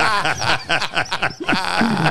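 Several men laughing hard together, their voices overlapping in rapid, repeated bursts.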